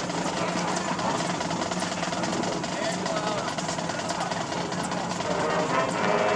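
Murmur of spectators over a steady low hum. About five seconds in, the marching band's brass comes in with held chords as the national anthem begins.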